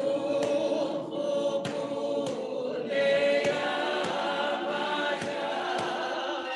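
A choir singing a slow song in several parts, with a sharp percussive beat a little under twice a second under the voices.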